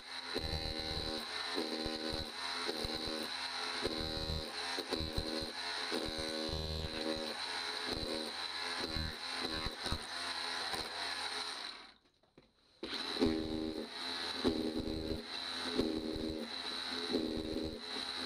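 Ryobi RSDS18X cordless SDS hammer drill in chisel-only mode, hammering ceramic floor tiles loose. It runs in a string of short bursts over a steady high motor whine, with sharp cracks of breaking tile. It stops for about a second near twelve seconds in, then carries on.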